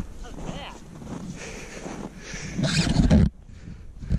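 Faint talking, with a louder rustling noise late on that stops suddenly.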